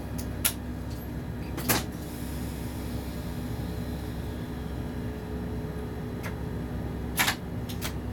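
Steady hum inside the cab of an ÖBB class 1016 electric locomotive. A few short sharp clicks come about half a second in, near two seconds and near the end, and they are the loudest sounds.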